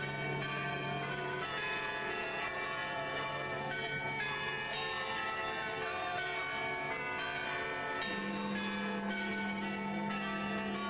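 Church bells pealing together, many ringing tones overlapping with fresh strikes throughout; the deepest note changes to a higher one about eight seconds in.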